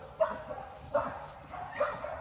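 Week-old puppies giving a few short, high squeals and whimpers as they are picked up and moved.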